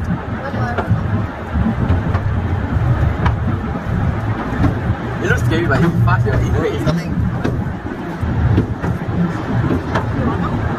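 Scenic Railway carriage running on its steep track: a steady low rumble of the wheels on the rails.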